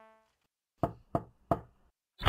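Three quick knocks on a door, evenly spaced about a third of a second apart.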